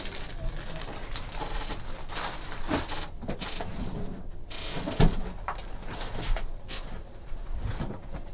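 Rustling and knocking of objects being handled and moved about on a table, with a sharper knock about five seconds in.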